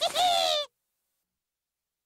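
A short, warbling, bird-like call made of several quick rises and falls in pitch, cut off suddenly under a second in.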